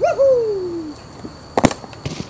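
A short pitched vocal call that slides down in pitch for about a second, followed by a sharp knock and a few clicks near the end as the recording phone or camera is handled.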